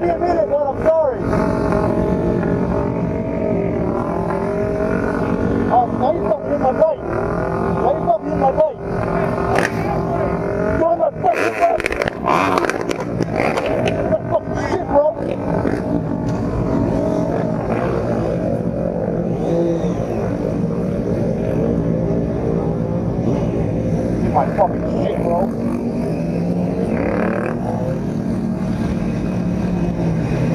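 Motorcycle engines of a large group ride, running steadily with revs rising and falling at times, heard from a rider's own bike.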